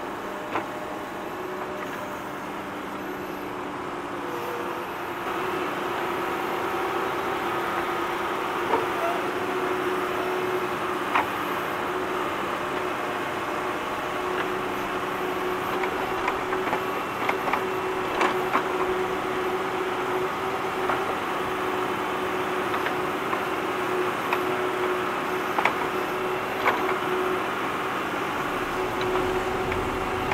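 Tractor digging: its engine runs steadily under load with a held, even tone, getting louder about five seconds in. Scattered sharp clanks break in over it, a dozen or so.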